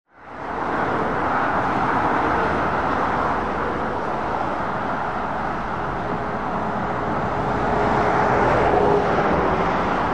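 Steady roadside traffic noise of tyres and engines on a busy dual carriageway, fading in at the start and swelling slightly toward the end as a Scania Super 660S V8 truck hauling a low-loader approaches.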